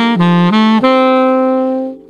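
Saxophone playing an ascending E-flat major triad followed by an F major triad (E-flat, G, B-flat, then F, A, C) in quick notes, ending on a long held C that stops near the end.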